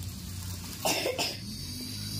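A person coughing twice in quick succession about a second in, over a steady low hum.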